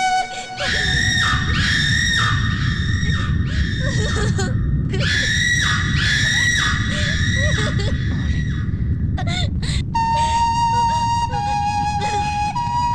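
Loud, repeated wailing cries, about two a second in two long runs, over a dense din of commotion. Sharp clicks follow near the end, then steady flute music comes in.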